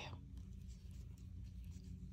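Faint scratchy rubbing and small ticks of a crochet hook pulling macrame cord through stitches while working double crochet into a magic ring, over a steady low hum.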